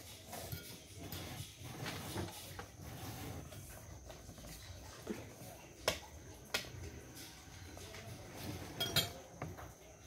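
Tableware during a meal: faint clinks of cutlery against plates and cups, with a few sharp clinks standing out just after the halfway point and near the end.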